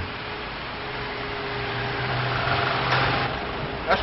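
Street noise with a motor vehicle going by: a steady low engine hum and a rushing noise that swells to a peak about three seconds in, then drops away.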